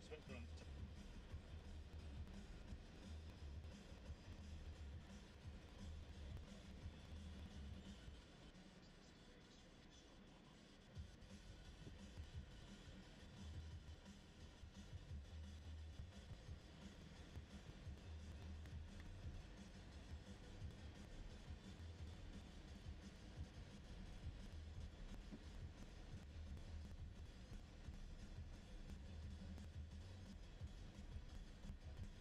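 Faint, low rumble of a minibus driving slowly, heard from inside the cabin on a muffled, faulty recording; it drops away briefly about a third of the way in.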